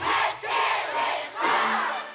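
Studio audience screaming and cheering in three loud swells while the song's beat drops out.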